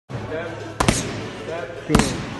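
Boxing gloves hitting punch pads: a quick double jab, two sharp smacks about a second in, then a single jab near the end.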